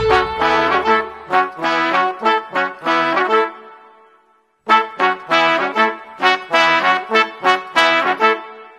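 Background music: brass instruments play a short melodic phrase without drums that fades out about four seconds in, then after a brief silence play a similar phrase that fades again near the end.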